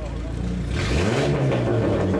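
Hillclimb competition car's engine accelerating on the course, rising in pitch about a second in, then holding its revs.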